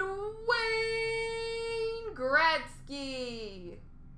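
A person singing out in a high voice: one long held note, then a short call that rises and falls, and a long falling note that fades out before the end.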